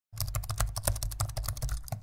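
Rapid computer-keyboard typing, about ten key clicks a second with low thuds under them, laid over the picture as an effect for entering text in a search box.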